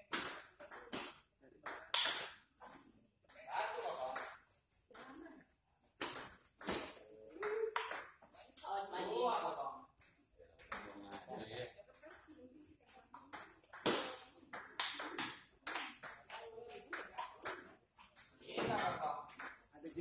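Table tennis rallies: a celluloid ball clicking back and forth between paddles and the table top in quick series, with short pauses between points.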